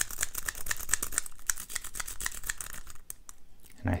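A sawtooth rake worked rapidly in the keyway of a 14-pin dimple-key padlock, metal clicking and rattling against the pins about ten times a second. The raking stops about three seconds in as the lock gives way and opens.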